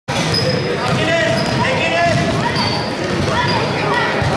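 Children's basketball game in a large sports hall: the ball bouncing on the court under a steady mix of voices calling out over one another.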